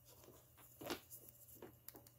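Near silence in a small room, broken by a few faint taps and clicks, the loudest about a second in.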